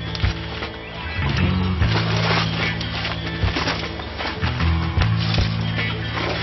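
Background music with a sustained deep bass line that changes note every second or so and regular drum hits.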